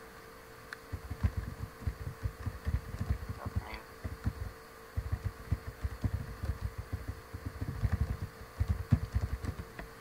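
Irregular low thuds and rumbles, several a second, under a steady electrical hum: background noise coming through a video-call audio line.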